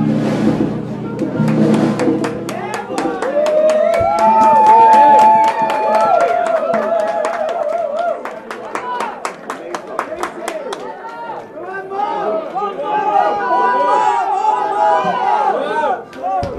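Live jazz band playing, stopping about two and a half seconds in. Then voices and chatter in a crowded pub, over a steady tapping of about four clicks a second.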